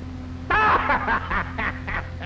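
A man laughing, a run of short "ha-ha" pulses starting about half a second in and trailing off, over a steady low hum on an old film soundtrack.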